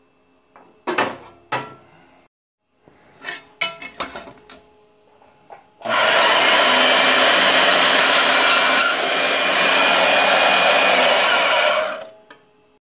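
A few sharp metal knocks and clicks as a steel bar is handled against a steel bandsaw stand, then about six seconds of loud, steady machine noise that stops just before the end.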